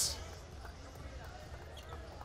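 Faint basketball arena court sound under a broadcast: a low steady hum with faint short sounds of a ball bouncing on the court.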